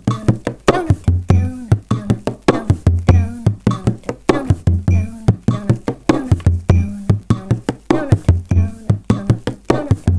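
Bodhrán played with a tipper in a 9/8 slip jig rhythm at 100 beats per minute: a steady run of quick strokes, several a second, with deep accented booms on beats one and seven and light taps between.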